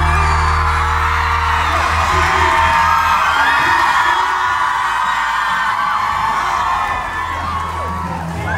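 Concert crowd cheering and screaming with high whoops. Under it, the band's last chord dies away over the first couple of seconds.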